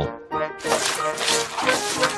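Cartoon sound effect of paint being brushed and splattered onto a wall: a wet, hissy swishing that starts about half a second in, over light background music.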